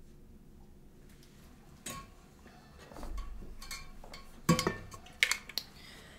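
Scattered clicks and clinks of hard objects being handled. The loudest come in the last second and a half, from a metal water bottle being picked up and its lid opened.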